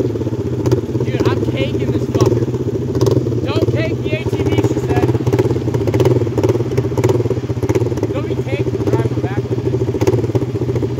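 ATV engines idling steadily, with brief voices breaking in a few times.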